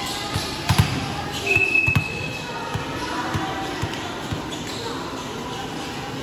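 A volleyball bouncing on the gym's concrete floor, two clear thuds in the first two seconds and fainter ones after. There is a short, steady, high-pitched whistle blast about a second and a half in, in a reverberant hall with voices murmuring.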